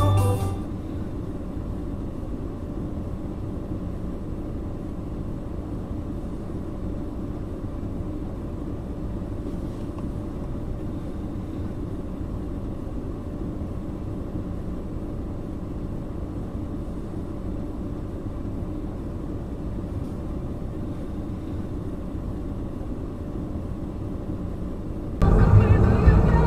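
Steady low rumble of a car's idling engine and cabin noise picked up by a dashcam mic while the car stands still. Loud music cuts in near the end.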